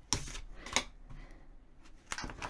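A tarot card is drawn from the deck and laid on a wooden tabletop, making two brief soft card sounds: one at the very start and one a little under a second in.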